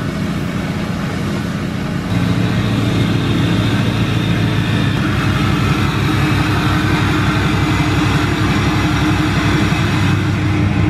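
Lifted pickup's 6.6-litre Duramax LLY turbo-diesel V8 idling as the truck reverses slowly, exhaust leaving through an over-the-axle dump. It grows louder about two seconds in as the truck comes closer.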